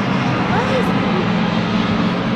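Classic Mini Se7en race cars' four-cylinder A-series engines running hard as a group of cars passes on the circuit, a steady engine drone with no let-up.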